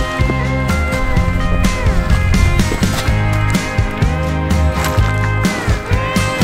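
Background music: sustained pitched notes over a regular beat, with some notes bending down in pitch about two seconds in and again near the end.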